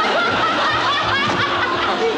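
Laughter over the show's closing theme music.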